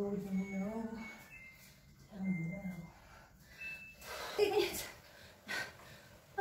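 A person's voice making wordless sounds: two drawn-out hummed or sung notes in the first few seconds, then several short breathy bursts like gasps or puffs of breath near the end.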